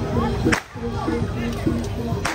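Gamelan accompaniment of a Barongan procession, with quick repeating metallic notes, and a single sharp whip (pecut) crack about half a second in.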